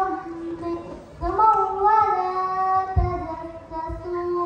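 A young girl singing slow, long-held notes into a microphone, with a short break about a second in and a few low thumps underneath.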